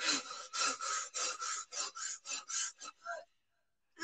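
A woman panting rapidly in short, breathy puffs, about four a second, acting out the breathing of labour. The panting stops near the end.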